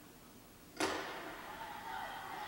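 Starting gun fired once, a sharp crack about a second in at the start of a women's 4x400 m relay, ringing on in the echo of an indoor track arena.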